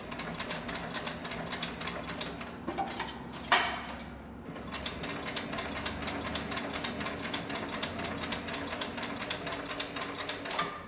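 Cowboy CB4500 heavy-duty walking-foot leather sewing machine, driven by a DC servo motor through a gear reducer, stitching two layers of lightweight upholstery leather. Its needle and feed make a rapid, even clicking over a steady motor hum, with one sharp, louder clack about three and a half seconds in.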